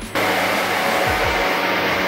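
A steady rushing noise that cuts in abruptly and stops as abruptly about two seconds later, over background music with a regular beat.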